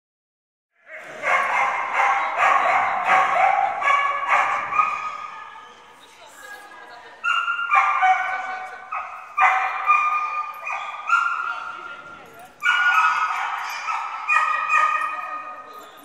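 A dog barking repeatedly and excitedly in high-pitched barks, echoing in a large hall, in three bouts with short lulls between them.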